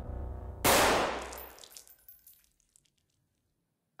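A single very loud gunshot in the horror film's soundtrack, about half a second in, ringing away over a second and a half after a low droning score. A second shot bursts in right at the end.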